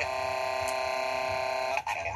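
A loud, steady held tone rich in overtones, at one unchanging pitch. It starts abruptly and cuts off sharply just before two seconds.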